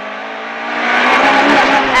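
Rally car engine heard from inside the cabin, pulling hard under acceleration on a dirt road, growing louder about halfway through, with road noise underneath.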